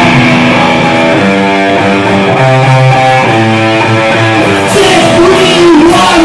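A punk rock band playing live: electric guitar chords come in loud all at once and ring on. Cymbal hits join about four and a half seconds in, and a man's singing starts near the end.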